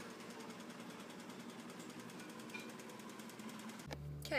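Sewing machine running fast: a faint, quick, even rattle of stitches.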